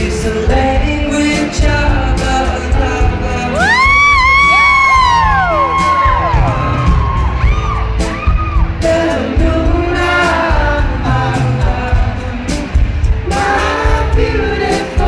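Live acoustic pop band playing: acoustic guitar, upright bass and drums, with a male voice singing. About four seconds in, several overlapping high whoops rise and fall over the music.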